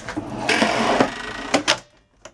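A boat cabin's folding table top being handled and moved: a rough scraping and rattling for about a second, then two sharp knocks near the end.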